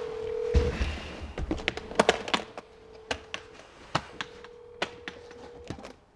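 Hard-shell guitar case being opened: a run of sharp clicks and knocks as its metal latches are snapped open and the case is handled. A steady hum-like tone sounds underneath and cuts out a few times.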